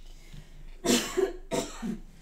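A person coughing, two coughs a little over half a second apart.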